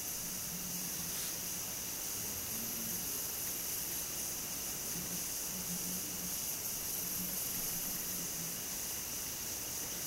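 Steady hiss of room tone and recording noise with a faint low hum that comes and goes; no distinct knitting-needle clicks are heard.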